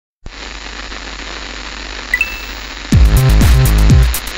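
Television static hiss with two short high tones about two seconds in. Loud electronic dance music with deep bass beats cuts in about three seconds in.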